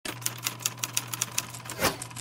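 Animated-intro sound effect: a quick run of sharp clicks, about six a second, like typewriter keys, over a low steady hum, ending in a louder swish that falls in pitch.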